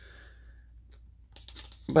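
Faint rustle of a cardboard disc slipcover and a foam packing peanut being handled, then a man starts speaking near the end.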